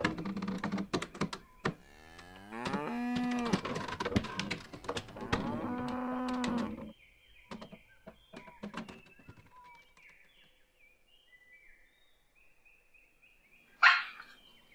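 Cattle lowing: two long moos a couple of seconds apart, among wooden knocks and clatter. After them it goes quieter, with scattered clicks and faint high chirps, and one sharp knock at the very end.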